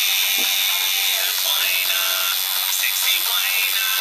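Electric tattoo machine running with a steady high buzz as its needle works ink into the skin of a wrist.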